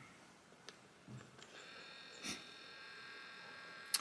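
Faint steady electric whine of a small motor, the camera's lens zooming in, starting about one and a half seconds in. A brief breathy puff comes partway through.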